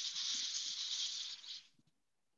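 A steady rustling hiss that lasts about a second and a half, then stops shortly before the end.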